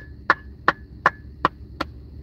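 Finger snaps in a steady beat: six sharp snaps, a little under three a second.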